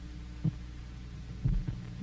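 Low steady hum, with a soft thump about half a second in and two or three more about a second and a half in.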